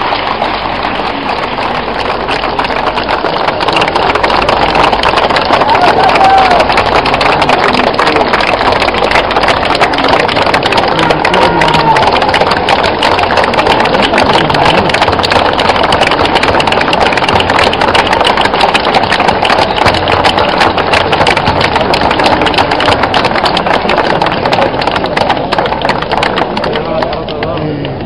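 Crowd applauding at length, a dense, even clapping that holds steady throughout.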